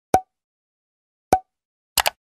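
Two short pop sound effects, a little over a second apart, as animated subscribe-screen buttons pop into view. A quick click begins right at the end.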